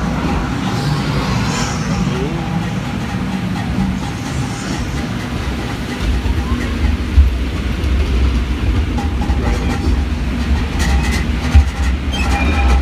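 Log flume boat riding the trough, then engaging the lift conveyor about halfway through and rumbling and clattering up the lift hill. There are a couple of sharp knocks along the way.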